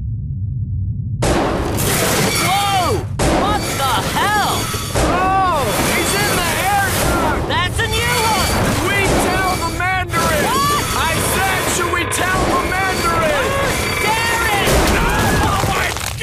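A soundtrack of booms and crashes over music, with voices yelling, starting about a second in after a brief hush.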